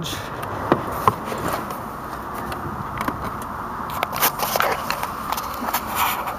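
Scattered small clicks, rustles and scrapes over a steady hiss: someone getting into a car's driver's seat and handling the camera phone.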